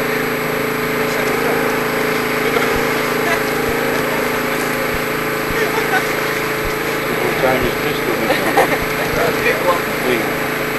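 A steady mechanical drone with a constant hum runs underneath. People's voices chatter in the background, more noticeable near the end.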